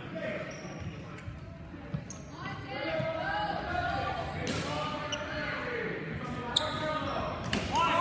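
Indistinct voices talking in a large echoing hall, with three sharp clacks of steel longswords striking each other, one about halfway in and two near the end.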